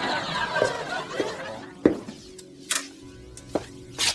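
Vinyl records being rummaged through in a box: a rustling shuffle for about a second, then a few separate sharp clicks and knocks as a record sleeve is pulled out and handled.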